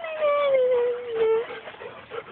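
A golden retriever puppy giving one long whining howl that slides down in pitch and fades after about a second and a half.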